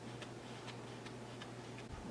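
Faint, fairly regular light ticks, about two a second, over a steady low hum.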